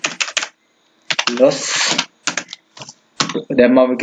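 Computer keyboard keys being tapped: a quick run of keystrokes at the start and another short run about two and a half seconds in, as text is deleted and retyped.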